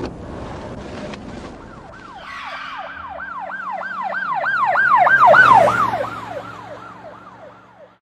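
Police siren in a fast yelp, its pitch sweeping up and down about three times a second. It grows louder to a peak about five and a half seconds in, then fades out.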